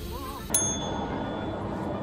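A single bright ding about half a second in, its high ringing tones fading over about a second, over a steady background hum.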